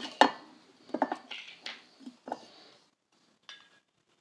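A glass liqueur bottle being uncapped and handled on a stone countertop: a quick run of light clinks and knocks over the first two and a half seconds, then a single faint click near the end.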